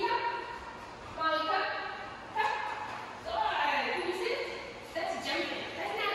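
Young boxer dog giving repeated barks and yelps, about one a second, each starting sharply and trailing off, echoing in a large room, as she balks against leash pressure.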